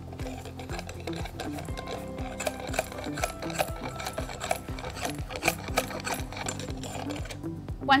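Dry hay scraping and crackling inside a metal forage probe as the core sample is pushed into the probe's collection cup, in a run of small irregular clicks, over background music.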